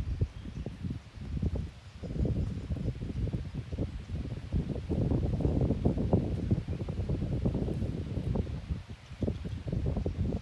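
Wind buffeting the microphone: an uneven, gusting low rumble that swells and dips, heaviest in the second half.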